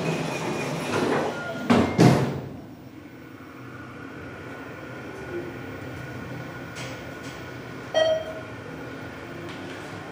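Hydraulic elevator doors closing with two sharp knocks about two seconds in. The car then travels down with a steady hum, and a single chime sounds about eight seconds in.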